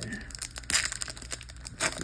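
Foil Pokémon booster pack wrappers crinkling as they are handled, with two sharper crackles, one about a third of the way in and one near the end.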